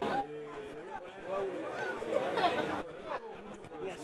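Faint, indistinct voices: people on and around a football pitch calling out, over a light open-air background.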